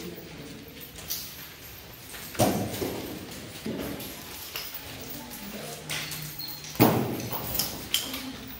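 Nunchaku being swung and caught in wrist-roll practice: a few scattered knocks, the loudest shortly before the end.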